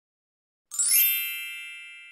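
A bright chime sound effect, struck once a little under a second in, its high ringing tones fading away slowly.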